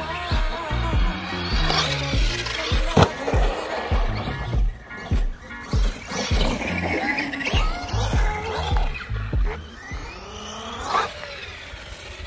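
Background music with a steady bass beat over an 8S electric RC car running on concrete skate-park ramps. Its motor whines up and down, and its tyres roll and rattle on the concrete.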